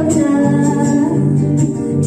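A girl singing into a handheld microphone over backing music, her voice amplified and holding long notes over a steady bass line.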